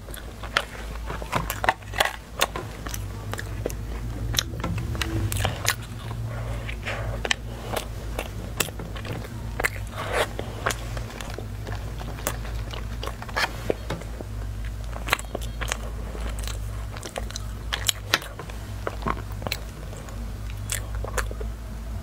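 Close-miked chewing and biting of flaky salted egg yolk puff pastry: irregular crisp crackles and mouth clicks through the whole stretch, over a steady low hum.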